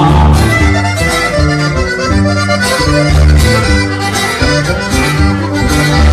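Live norteño band playing an instrumental break between sung verses: a button accordion carries the melody over a strummed guitar and a steady bass beat.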